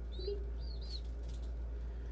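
A young pigeon (squeaker) giving thin, high begging peeps while being hand-fed, three short chirps in the first second.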